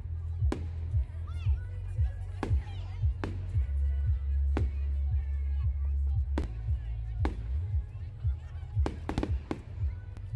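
Fireworks going off: about nine sharp bangs a second or two apart, several in quick succession near the end. Music and people's voices run underneath.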